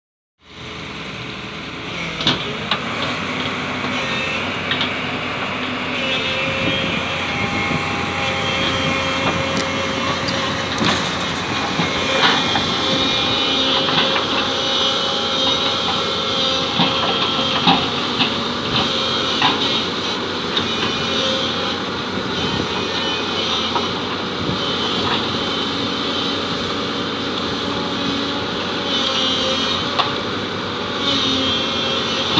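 SANY crawler excavator's diesel engine and hydraulics running steadily under load as it digs sand and loads it into a truck, with short knocks and clanks every few seconds.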